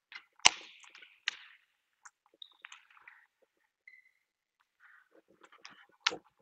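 A handball hitting hard, loudest about half a second in and again after a second, with the echo of a sports hall. Short squeaks and light taps of sports shoes follow on the court floor, and another sharp smack of the ball near the end as it is caught.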